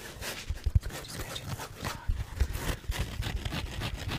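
A dry, dense sponge squeezed and rubbed between the fingers: a fast, uneven run of scratchy scrunches with soft low thuds, the loudest about three-quarters of a second in.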